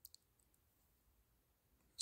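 Near silence: room tone, with two faint clicks of board-game pieces being handled just at the start.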